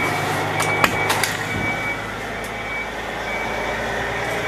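Steady low drone of a truck's engine running, heard from inside the sleeper cab, with a few light clicks about a second in and a thin high tone that comes and goes.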